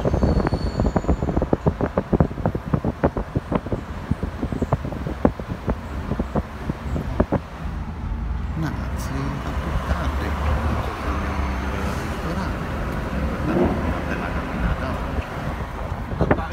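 Street noise with many sharp clicks and knocks over a low rumble. About halfway it cuts to the steady road and engine noise of a car driving, heard from inside the cabin.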